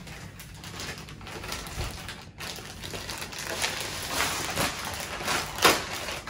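Plastic packaging crinkling and crackling as it is handled and pulled open by hand, with sharper crackles in the second half.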